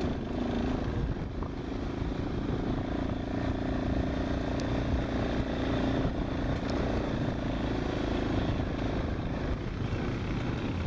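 Quad bike (ATV) engine running steadily at speed, its pitch holding nearly level throughout.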